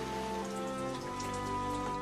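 Water trickling and splashing down rocks in a small stream, as a steady hiss, under soft background music with long held notes.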